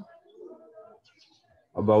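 A faint bird call in the background during a short pause in a man's speech, which resumes near the end.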